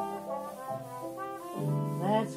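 A jazz cornet plays a short melodic fill between the sung lines of a slow pop ballad, over sustained band and string accompaniment, in a 1950s studio recording.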